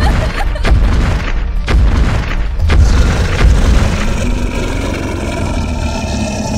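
Heavy, deep booming thuds about once a second, sound-effect footsteps of a chasing T. rex, over dramatic music. The booms give way to held music tones for the last two seconds.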